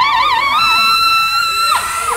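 A trumpet in the dance music shakes rapidly on a high note, then holds a steady, slightly higher note. It drops off with a falling slide near the end.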